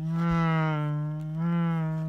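A man's voice holding one long note at a steady low pitch for about three seconds, swelling slightly twice.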